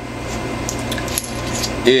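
A long, steady hissing intake of breath that grows slightly louder before speech resumes near the end, with a few faint clicks, over a low steady hum.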